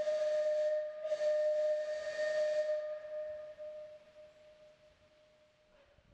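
Steam whistle blowing one long steady note over a hiss of escaping steam, fading away over about four seconds.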